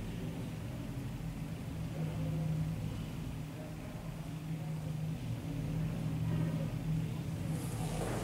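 Low, steady rumble of road traffic, swelling twice as vehicles pass, about two and a half and six and a half seconds in.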